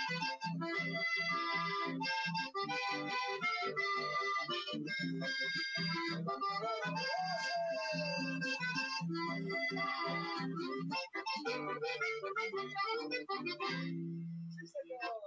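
Button accordion playing a lively folk tune with strummed acoustic guitar backing over a steady pulse, ending on a held chord. Heard through a live webcast link.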